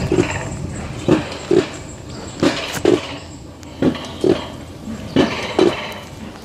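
Alpine coaster sled running along its metal track, with paired clunks repeating about every second and a half over a steady rushing noise.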